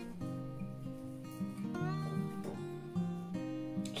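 Background music: an acoustic guitar playing a steady run of notes, with one note sliding up in pitch about two seconds in.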